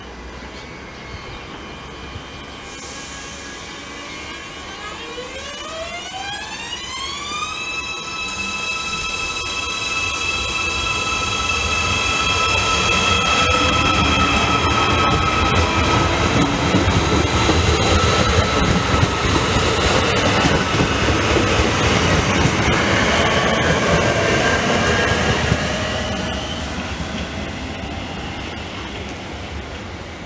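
Multiple-unit passenger train pulling away from the platform: a whine rises in pitch for a few seconds as it accelerates, then holds steady while the running noise grows loud as the carriages pass close by, fading over the last few seconds.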